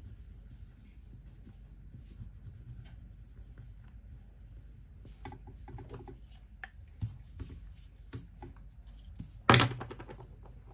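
Faint scratching of a wax-core colored pencil on paper, then from about halfway a run of light clicks and, near the end, a short loud clatter of the wooden pencils being handled.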